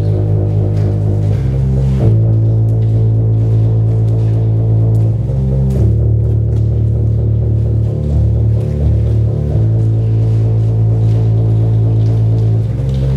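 Sustained low drone music: a steady held tone with overtones that moves to a new pitch every couple of seconds.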